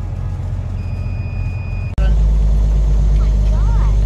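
Steady low rumble of a vehicle engine running, which becomes much louder and heavier after a sudden break about two seconds in.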